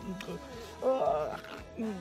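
A man's short, exaggerated vocal groan about a second in, over a background music bed.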